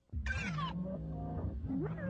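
A sudden animal-like cry, about half a second long, falling in pitch, breaks a silence. Music starts right after it.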